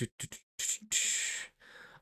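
A few quick soft clicks, then a breathy exhale lasting about half a second.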